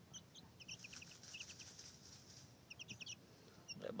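Young chicken chicks peeping faintly in quick runs of short high notes, about a second in and again near the three-second mark, with soft scuffing of loose dirt as they dust-bathe.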